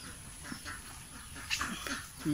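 Quiet outdoor background with a few faint, short animal calls, one about half a second in and a cluster near the end.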